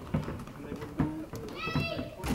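Basketball dribbled on a carpeted floor: dull bounces about every three-quarters of a second. A brief high-pitched squeal comes near the end.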